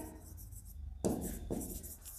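Stylus writing on a touchscreen smartboard: short scratching strokes, two bursts in the second half.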